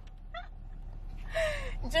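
A short, faint vocal sound falling in pitch, over a low steady hum.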